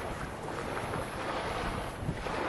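Steady rush of wind on the microphone with ocean surf behind it.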